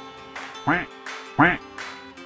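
A woman laughing hard in loud bursts about 0.7 s apart, each rising then falling in pitch, over background music with steady held notes.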